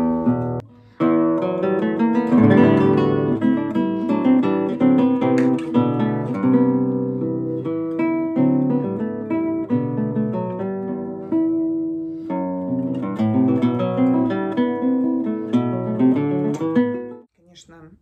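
Nylon-string classical concert guitar played solo, fingerpicked: a melodic passage of plucked notes with a warm, deep tone. It begins about a second in, pauses briefly about two-thirds of the way through, and stops just before the end.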